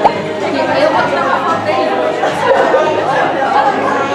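Indistinct chatter of several voices in a large indoor room, with a brief knock right at the start.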